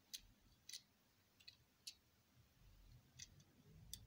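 Near silence broken by about six faint, sharp clicks as a small die-cast model car is handled and turned over in the fingers.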